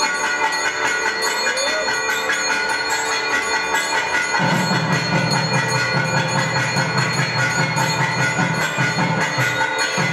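Hindu temple puja music with bells ringing on and on. A deeper, fuller part joins about four seconds in.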